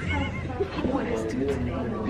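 A girl laughing, a high-pitched, wavering laugh near the start, with voices talking around it.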